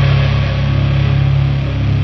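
Heavy rock music without vocals: a steady low distorted guitar and bass drone, with the higher held notes dying away at the start.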